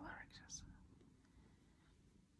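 Near silence: faint room tone, after a soft, whispery voice trails off in the first half second.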